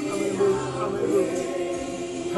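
A group of voices singing in gospel style, holding long sustained notes that slide between pitches.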